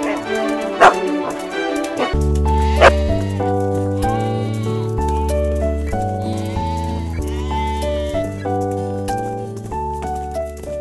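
Cartoon sheep bleating several times over light background music. The music, with a bass line, comes in about two seconds in.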